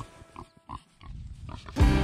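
Berkshire pigs grunting a few times in short, separate bursts. Near the end, background music with a heavy beat comes in loudly.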